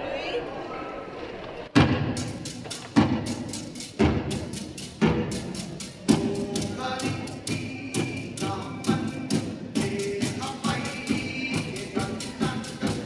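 A hula chant with pūʻili begins: about two seconds in, deep drum beats start at roughly one a second, with the light clacking and rattling of split-bamboo pūʻili struck between them. A chanting voice joins about halfway through.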